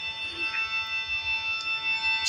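Instrumental interlude of a devotional song: a keyboard instrument holds steady chords with no singing.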